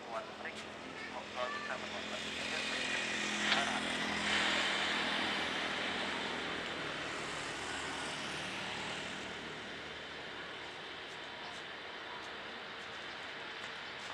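Jet engines of a Lion Air Airbus A330 taxiing. The engine noise swells about two seconds in, is loudest around the middle, then eases off.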